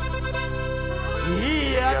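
Live Chilean ranchera band playing: sustained accordion and keyboard chords over a steady bass, with a singer's voice sliding in near the end.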